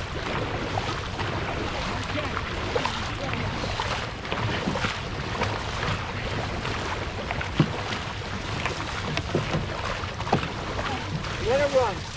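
Dragon boat paddles stroking through the water as the boat glides, under a steady rush of wind on the microphone. A voice calls out near the end.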